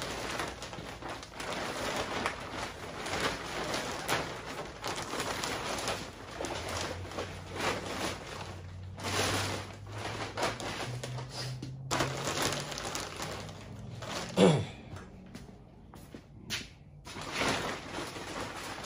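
Large clear plastic bag crinkling and rustling in irregular bursts as it is worked down over a bare engine block, with one brief louder sound about fourteen and a half seconds in.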